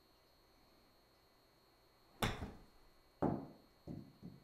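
A wedge striking a golf ball off a simulator hitting mat, a sharp crack about two seconds in, followed about a second later by a second sharp thud and a softer knock near the end.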